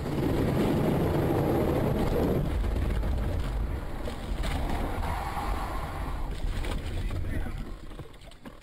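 Vehicle driving at speed on a wet road, heard from inside the cabin: steady tyre and wind noise, loudest in the first two and a half seconds. There are a few short knocks in the middle, and the sound drops off near the end.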